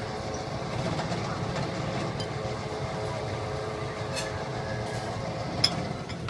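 A steady low mechanical drone with a faint steady hum above it, and a sharp click shortly before the end.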